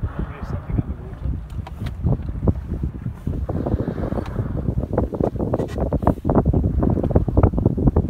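Wind buffeting the microphone in an open boat on the sea, an uneven rumble with many small knocks and gusts, with water lapping at the hull.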